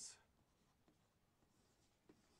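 Near silence with a few faint taps and scrapes of a stylus writing on a touchscreen.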